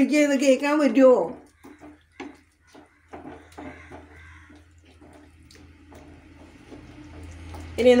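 A voice speaks for about the first second. Then a wooden spatula stirs thick chicken curry gravy in a frying pan, giving scattered short scrapes and knocks over a low steady hum.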